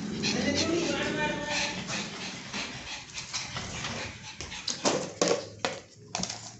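Pug whining, high and wavering, in the first couple of seconds, followed by a run of short sharp clicks and knocks near the end.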